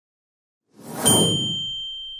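Subscribe-animation sound effect: a short whoosh about three-quarters of a second in, ending in a single bright bell ding that rings on and fades slowly.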